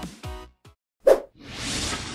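Video-editing transition sound effects. Background music fades out, then a short pop comes about a second in, followed by a whoosh that swells and fades.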